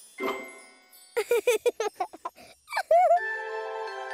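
Cartoon jingle music: a chime, then a quick run of bouncy, bending pitched notes and a sliding note, settling into a held chord.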